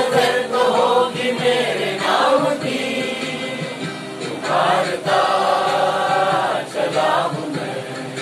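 A mixed chorus of men and women singing a Hindi film song together in unison, phrase after phrase with short breaths between lines.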